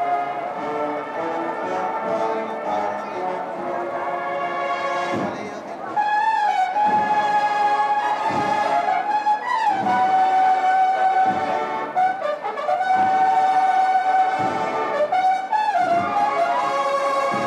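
Brass band playing a slow processional march: long held brass notes over a deep drum beat about every second and a half, growing louder about six seconds in.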